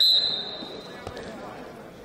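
Referee's whistle blown once, a short steady high-pitched blast that starts the wrestling bout, fading into gym hall background noise.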